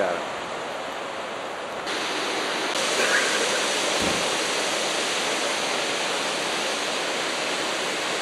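Steady rush of water from the Cahora Bassa dam's spillway jets plunging into the gorge below, getting louder about two seconds in.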